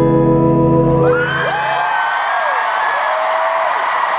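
A held piano chord rings and dies away about a second in, and an arena crowd breaks into cheering with high screams.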